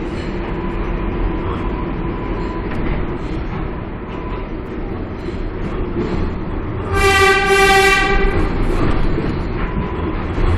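R142A subway train running through a tunnel, heard from inside the car with a steady rumble of wheels and motors. About seven seconds in, the train's horn gives two short toots back to back, the loudest sound here.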